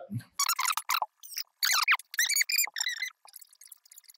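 Fast-forwarded audio: a man's voice sped up into high-pitched, squeaky chipmunk-like chatter in short snatches, thinning to a few faint ticks in the last second.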